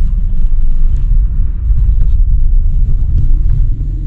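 Steady low rumble of engine and road noise inside a moving Toyota Corolla's cabin.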